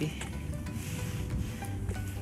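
Shallow rocky stream running over stones, a steady trickling, babbling water sound.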